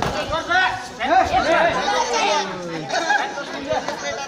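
Several young voices talking and calling out over one another.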